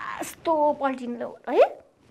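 A woman's voice making drawn-out, expressive vocal sounds that end in a quick upward sweep in pitch about one and a half seconds in.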